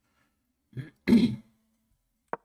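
A man clearing his throat about a second in: a small burst, then a louder one that trails off in a short hum.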